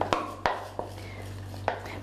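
A wooden spoon knocking and scraping against a plastic jug and the rim of an enamel pot, a handful of sharp, irregular knocks as the last of the oil is scraped out.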